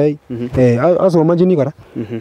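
A man's voice talking, in a language the recogniser could not follow.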